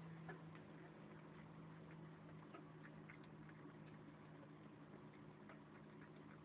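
Faint, irregular small clicks of a cat chewing and licking food from a plate, over a steady low hum.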